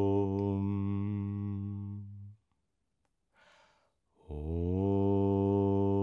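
A man chanting long, drawn-out repetitions of the syllable om on one steady low note. The first om ends about two seconds in. After a short breath in the silent gap, the next om begins near the end.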